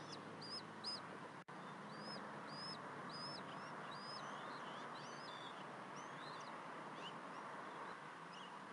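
High, thin bird chirps: short arched notes repeated about twice a second, then looser rising and falling chirps, over a steady background hiss.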